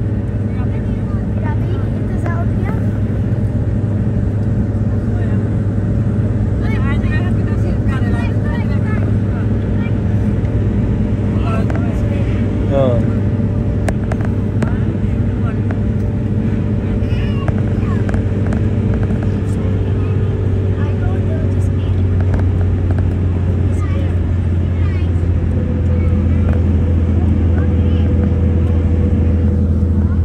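Steady low drone of a car's engine and road noise heard from inside the moving car, with faint passenger voices now and then.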